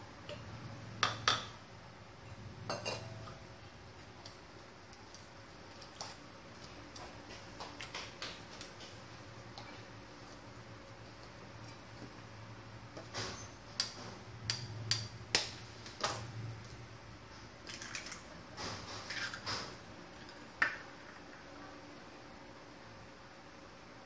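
Wooden spoon knocking and scraping against a stainless steel mixing bowl as eggs are stirred into a thick chocolate batter, with clinks of a small steel bowl against the rim as an egg is tipped in. The clinks come scattered, in two busier runs in the second half.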